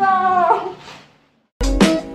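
A woman's high, drawn-out whooping cry, about half a second long, that falls away to silence. About a second and a half in, music with plucked strings starts abruptly.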